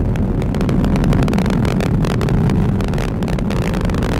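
Atlas V rocket's RD-180 engine during ascent: a steady low rumble with rapid crackling.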